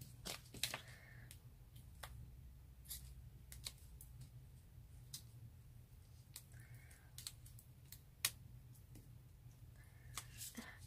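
Faint, irregular clicks and taps of cardstock and a foam pad being handled and pressed down onto a card, over a low steady hum.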